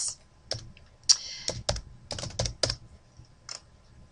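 Computer keyboard being typed on, an irregular run of about a dozen keystrokes, as a password is entered into a login form.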